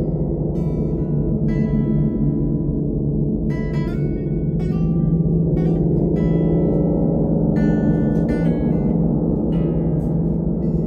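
Large hanging gongs sounding a steady, dense low drone, with an acoustic guitar strummed and picked over it, its chords and notes ringing out and fading every second or so.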